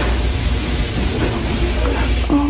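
Steady, loud mechanical rumble with a constant high hiss over it, unchanging throughout: machinery-like background noise.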